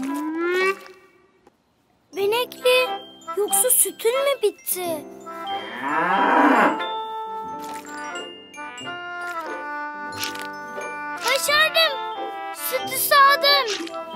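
Cheerful children's cartoon music with bending, voice-like melodic phrases, broken by a short pause about a second in. About six seconds in, a cartoon cow moos once over the music.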